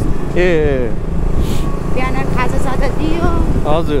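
A KTM 200 Duke motorcycle's single-cylinder engine running steadily under way, with road and wind rumble, beneath voices talking.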